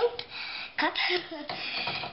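A young girl's voice, talking in short indistinct bits.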